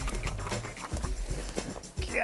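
Footsteps and rustling in dry leaf litter, an irregular run of crunches and knocks, over a low rumble.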